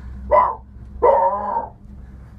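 A man imitating a dog barking with his voice: two barks, a short one and then a longer one.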